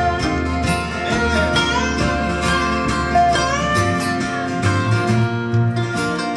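Live bluegrass band playing an instrumental break: a dobro (resonator guitar) plays lead with sliding notes over strummed acoustic guitars, mandolin and upright bass.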